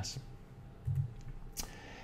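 A pause in a quiet room with a faint short murmur about a second in and a sharp single click about one and a half seconds in.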